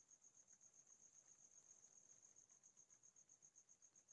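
Near silence, with a faint, high-pitched pulsing chirp repeating about ten times a second.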